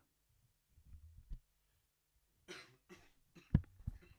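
A person coughs once, about two and a half seconds in, with faint low rumbles earlier. A sharp single knock follows about a second later.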